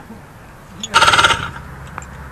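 Paramotor's small two-stroke engine briefly firing on a start attempt: a short burst about a second in, lasting under half a second, before it dies back down.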